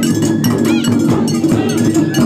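Japanese taiko drum ensemble playing: a fast, even rhythm of sharp strikes on the small drums over the deeper sound of the big barrel drums.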